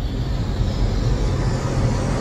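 Logo-intro sound effect: a rushing whoosh that keeps swelling over a low, rumbling cinematic music bed.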